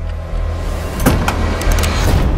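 Trailer sound design: a low, pulsing rumble under a rising swell of noise, with a sharp hit about a second in and a quick cluster of clicks near the end.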